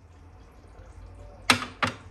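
Glass dish of baking soda knocked twice against a glass refrigerator shelf as it is set down, two sharp clinks a third of a second apart near the end, over a low steady hum.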